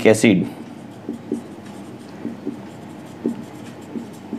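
Marker pen writing on a whiteboard: a run of faint, short strokes. A man's voice trails off at the very start.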